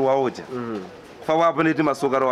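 A woman speaking in a local language, with a short pause about halfway through.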